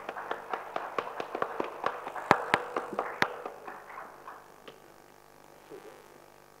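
Audience applauding: a loose scatter of individual hand claps that thins out and dies away about four and a half seconds in.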